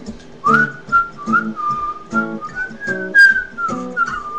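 A person whistling a gliding melody over acoustic guitar strumming, in an instrumental break of an island-style song. The whistle comes in about half a second in and carries the tune to the end.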